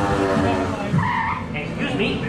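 Ride soundtrack playing a cartoon screech like skidding tyres about a second in, after a held pitched sound and among character voices.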